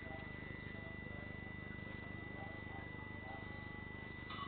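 Quiet, steady room tone: a low hum with a thin, constant high-pitched whine and a few faint, indistinct sounds.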